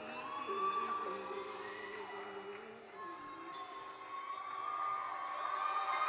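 Live concert audience cheering and whooping at the end of a song, with long held tones sounding over the crowd noise.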